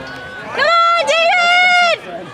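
A spectator yelling a long, high, held cheer close to the microphone, in two parts with a brief break between them, over crowd chatter.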